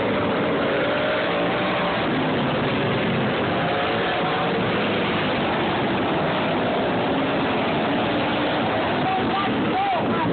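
V-twin racing lawn tractors running laps of a dirt oval: several engine notes rise and fall together over a steady wash of noise. A voice comes in near the end.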